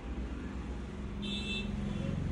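Steady low motor hum that grows slightly louder, with a short high-pitched tone a little over a second in.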